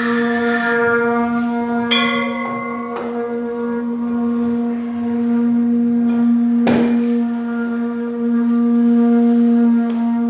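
Free-improvised music: a steady held drone with overtones, joined by higher tones about two seconds in, and a single sharp percussive strike about seven seconds in.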